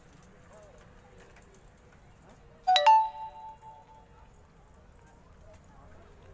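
A bell-like chime: two quick metallic strikes close together, near the middle, ringing out with several clear tones that fade over about a second. Faint outdoor background around it.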